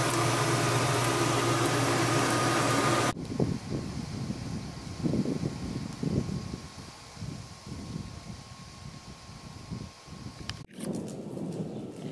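A steady machine hum with a hiss cuts off suddenly about three seconds in. Irregular low rumbling gusts of wind on the microphone follow.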